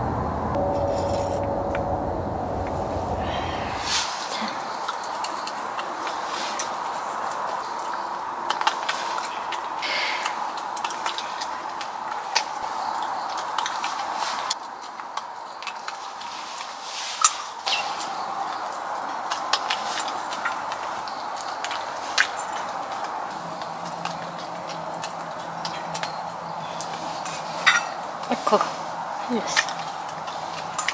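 Dishes and utensils clinking and tapping now and then over a steady background hum. A low rumble stops about four seconds in.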